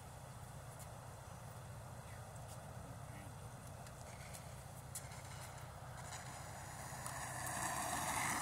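Faint steady outdoor hiss, then the 80 mm electric ducted fan of an FMS BAE Hawk RC jet growing louder over the last two seconds as it comes in to land on a nearly spent battery.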